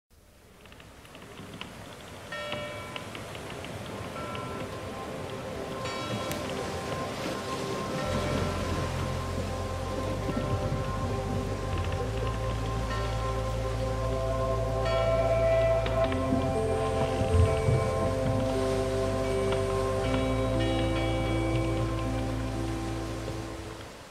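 Ambient intro music: long held chords that swell from quiet, with a deep bass coming in about a third of the way through and changing note every four seconds. Bright chime-like strikes ring out a few times over a steady rain-like hiss.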